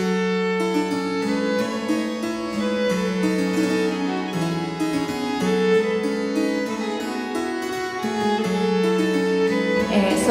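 Baroque violin and a virginal, a small rectangular harpsichord, playing a galliard together: a bowed violin melody over plucked keyboard chords and a moving bass.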